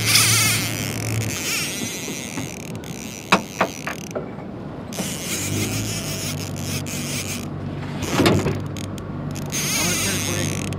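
A boat motor hums steadily at low speed; the hum drops away for a few seconds in the middle and comes back. Over it are wind and water noise and a few sharp clicks from the baitcasting reel as the baited line is worked.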